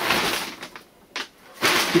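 Plastic bag of peat-based potting substrate rustling and crinkling as it is handled. The rustle comes in two spells with a short quiet gap near the middle.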